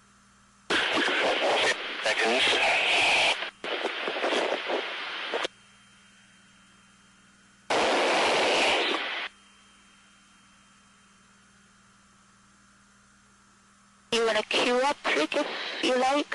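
Radio or intercom transmissions in the cockpit: three bursts of hissy, garbled voice that key on and off abruptly, a long one about a second in, a short one near the middle, and a choppy one near the end. Between them there is a faint steady hum.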